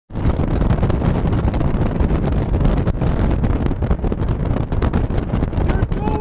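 Wind rushing over the microphone along with the road noise of a moving car, a steady loud rumble.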